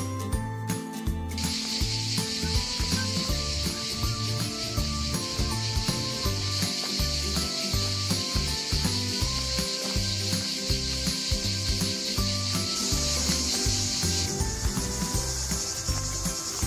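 Background music with a steady bass beat. About a second in, a loud, steady, shrill chorus of cicadas comes in over it, and it shifts higher in pitch near the end.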